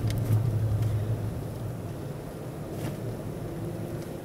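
Steady low hum of a busy exhibition hall, easing about a second in, with a couple of faint clicks as the Corvette Grand Sport's manual gear lever is moved through its gates.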